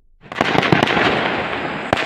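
Fireworks and firecrackers going off in a dense, continuous crackle of rapid pops. It starts abruptly about a quarter of a second in, after a brief quiet.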